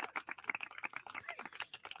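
Computer keyboard typing: a quick, irregular run of light clicks.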